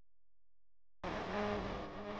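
A buzzing sound with a steady low pitch that cuts in abruptly about a second in.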